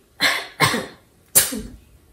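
A girl coughing three times into the crook of her elbow, the third cough the sharpest.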